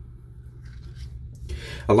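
Faint rubbing and scratching of a silicone body scrubber's bristles brushed across a hand, more noticeable in the second half, over a low steady hum.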